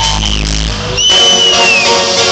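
Loud electronic dance music played by a DJ over a club sound system. The heavy bass cuts out under a second in, and a high held note comes in and slides down near the end.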